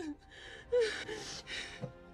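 A young woman sobbing, drawing several gasping, catching breaths between cries.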